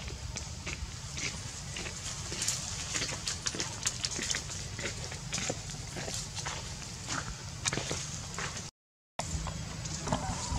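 Irregular crackling and snapping of dry leaves and twigs over a low steady rumble. The sound cuts out completely for about half a second near the end.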